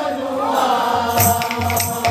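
Kirtan music: a held group chant, joined about a second in by barrel drums and metallic percussion playing a steady, rhythmic beat.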